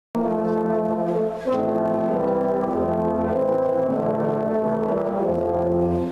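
Brass quartet of tuba, trombone and two euphoniums playing slow sustained chords that change every second or so, with a short break between phrases about a second and a half in.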